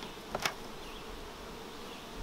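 Honey bees buzzing steadily around the hives, with a brief tap about half a second in as a flap of the corrugated plastic winter wrap is folded down.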